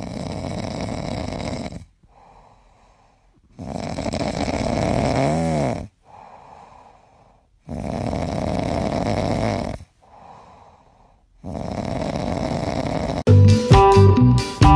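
Domestic cat snoring in its sleep: four loud snores about four seconds apart, each followed by a much quieter breath. Music starts just before the end.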